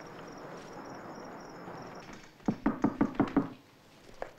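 Crickets chirping steadily as night ambience, then about two and a half seconds in a quick run of about six knocks on a door.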